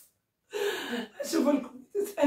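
A woman's voice, speaking in short bursts that begin about half a second in after a brief pause.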